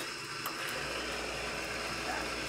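Eureka Mignon espresso grinder running steadily, grinding coffee into a portafilter held in its fork.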